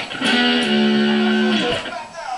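Stratocaster-style electric guitar playing a slow blues lead line. One note is picked about a quarter second in and held for over a second, then cut off, with a short note just before the end.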